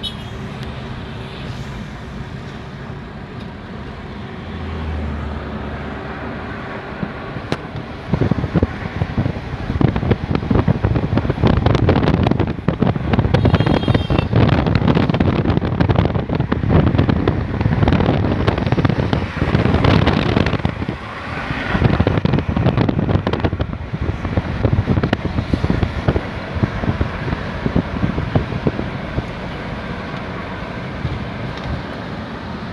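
A car driving, heard from inside the car: a steady road and engine hum, then from about eight seconds in a much louder, gusting rush of wind buffeting the microphone.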